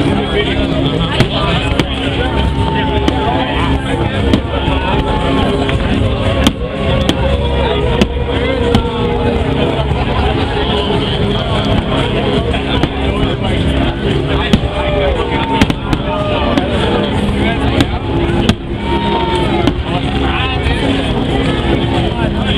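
Fireworks going off in a string of sharp bangs at irregular intervals, over a crowd talking and music playing.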